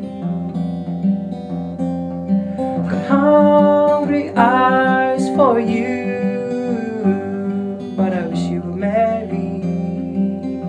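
Folk song with acoustic guitar strummed steadily and a sung vocal line holding long notes from about three seconds in and again near the end.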